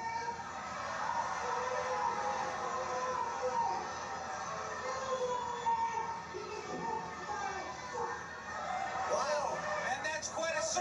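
A woman's voice over an arena public-address microphone, too indistinct to make out, with crowd noise behind it.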